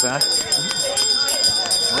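Runners' footsteps on asphalt, a quick regular patter of about three to four steps a second, over a steady high-pitched electronic whine.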